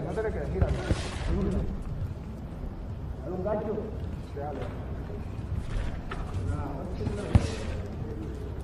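Ringside sound of a live boxing bout: indistinct shouting from around the ring over a low rumble, with the thuds of gloved punches and footwork and one sharp knock near the end.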